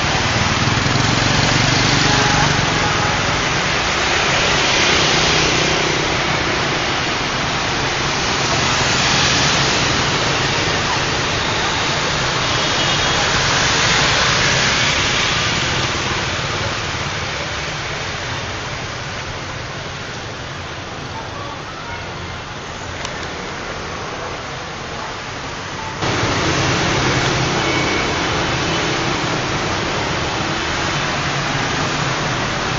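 Street traffic noise from motor scooters and cars passing, a steady wash of engines and tyres that swells and fades as they go by. It grows quieter in the latter part, then jumps back up abruptly near the end.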